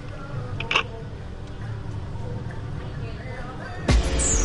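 Low background music with a steady bass and faint talk, broken by one short, sharp click about three quarters of a second in; a louder burst of music starts just at the end.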